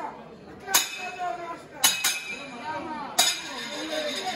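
Three sharp metallic clinks with a short ringing tail, about a second apart, over faint background voices.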